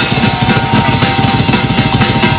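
Heavy metal band playing live and loud: distorted electric guitars over fast, driving drums with rapid kick-drum strokes.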